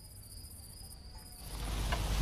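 Crickets chirping in a steady high trill over a quiet night background; about one and a half seconds in, this gives way to louder outdoor noise with a low rumble.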